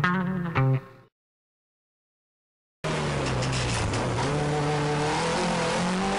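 A brief burst of music-like tones cuts off about a second in and gives way to dead silence. Nearly three seconds in, a rally car's engine comes in abruptly, heard from inside the cabin under load, its pitch dipping once and then climbing steadily as it revs.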